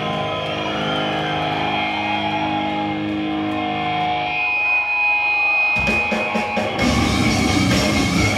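Brutal death metal band playing live through a club PA: held guitar notes ring for the first few seconds, then about six seconds in the drums and full band come in hard.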